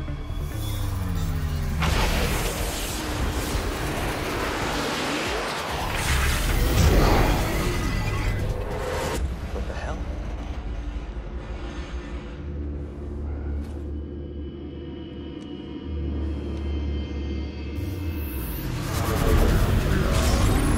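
Tense dramatic score over deep rumbles and whooshing swells of a starship's sound effects as it strains through evasive manoeuvres, with loud surges about two and seven seconds in and again near the end.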